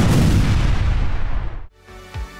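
An explosion sound effect: a sudden loud blast with a deep rumble that dies away, then cuts off abruptly near the end.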